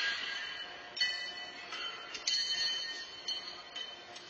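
Pitched horseshoes clanking against steel stakes and other shoes: several sharp metallic clanks, each ringing on, in a large echoing arena.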